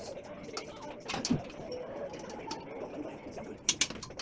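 Sharp clicks and taps of metal table-frame parts being handled and fitted together: one about a second in and a quick pair near the end, over a low wavering murmur.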